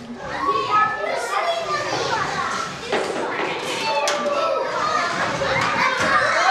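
A crowd of young children talking and calling out all at once, a busy hubbub of high voices that swells up about half a second in and keeps going.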